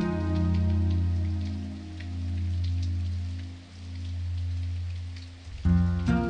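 Background music: sustained low, droning chords that swell and fade in slow waves, with a fuller chord struck again near the end.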